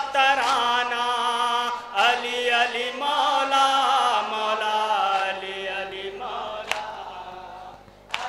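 Male voices chanting a noha (Muharram lament): a lead reciter on a microphone with the gathering joining in. A few sharp chest-beating slaps of matam cut through, and the chanting fades over the last few seconds.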